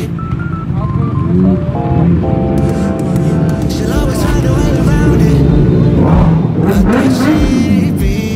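Background music: a song with a sung melody.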